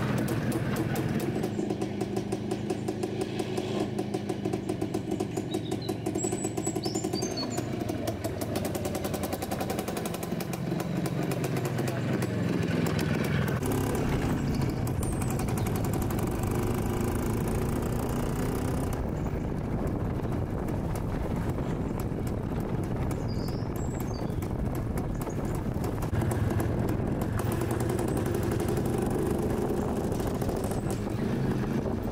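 Old motorcycle with a sidecar, its engine running throughout, with the pitch rising and falling as it is ridden and the revs change through the middle.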